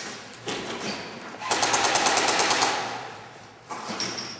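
Airsoft electric rifle firing one full-auto burst of rapid, even shots, about a dozen a second for a little over a second, echoing in an empty concrete hall. Two single knocks come before it, near the start.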